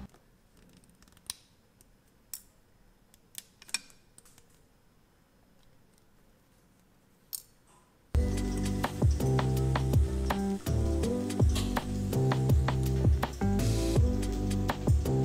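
Small metal snips cutting 18 karat gold wire: several sharp clicks spread over the first seven seconds. About eight seconds in, louder background music with a steady beat starts abruptly.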